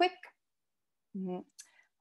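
A woman's speaking voice pausing mid-sentence: the last word trails off, then a brief flat hesitation hum about a second in and a faint mouth click.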